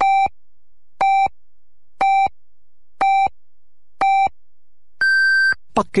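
Radio hourly time signal: five short, low electronic pips one second apart, then a longer, higher pip marking the exact hour, 22:00 Beijing time.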